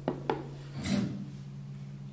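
Two light knocks close together, then a short scraping rub about a second in, over a steady low hum.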